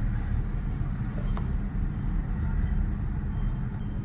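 Pencil drawn along a plastic ruler on paper, a soft scratching, over a steady low background rumble with a hum.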